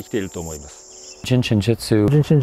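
Men's speech with a short pause near the middle. Beneath it runs a faint, steady, high-pitched insect trill, which stops a little over a second in.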